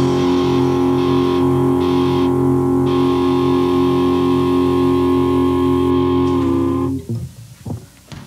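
A final distorted electric-guitar chord held and ringing out at the end of a lo-fi grunge/alternative rock song on a home 4-track cassette recording. It cuts off abruptly about seven seconds in, and a few faint clicks follow.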